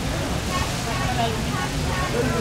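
Indistinct voices of people talking nearby, over a steady low rumble.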